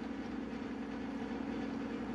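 A steady low background hum with a faint constant tone, unchanging and with no distinct events.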